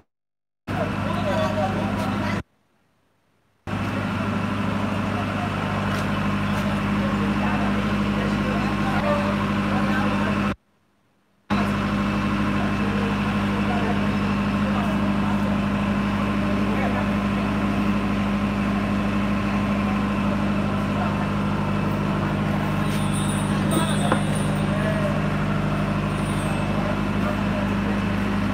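A steady low motor hum with indistinct voices behind it; it cuts out to silence twice for about a second.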